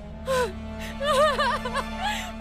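A woman gasps, then cries in quickly wavering, broken wails over a steady low background-music drone.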